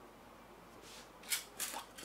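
Hands handling and smoothing printed dressmaking fabric on a table. It is quiet at first, then a few short rustles and scrapes come in the second half.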